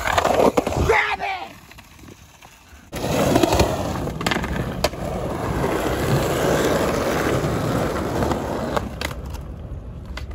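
Skateboard on a concrete park: the loose board clattering onto the ground as a trick is bailed. After a short lull, the urethane wheels roll steadily across the concrete, with a sharp clack about five seconds in and a few more near the end.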